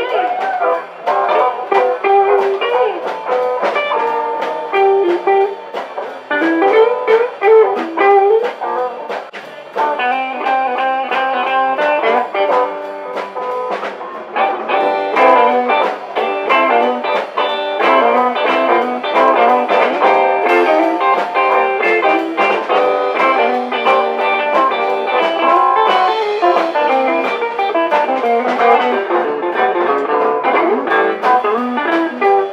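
Live band playing an instrumental blues shuffle on electric guitars, with no singing.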